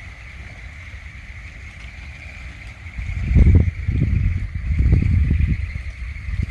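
Irregular low rumbling gusts of wind buffeting the microphone, loudest from about three seconds in, over a faint steady high-pitched hum.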